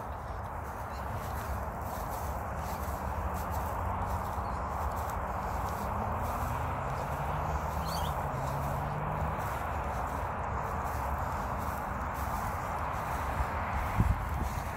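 Footsteps walking on grass, a steady run of soft steps, over a constant outdoor hiss. A faint low hum drifts in pitch through the middle.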